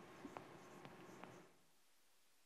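Faint chalk on a blackboard: a few light taps and scratches as a word is written, stopping about one and a half seconds in.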